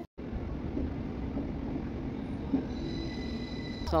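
A train running past: a steady rumble and rush of noise, with a faint, thin, high wheel squeal coming in over the last second or so.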